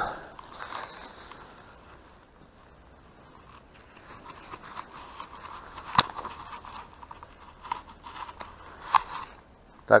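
Footsteps through dry grass and pine needles, with the crinkle and rustle of a plastic rubbish bag and scattered small crackles; two sharp cracks stand out, about six seconds in and again near the end.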